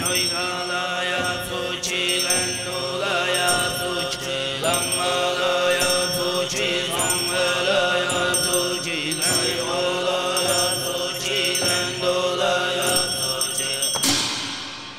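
Tuvan traditional music accompanying a masked dance: low chanting over a steady sustained drone, with high metallic percussion ringing repeatedly above it.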